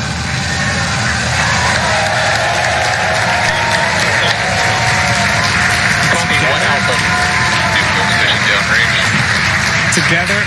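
A crowd cheering and applauding over the steady low rumble of the Falcon 9's first-stage Merlin engines climbing away after liftoff.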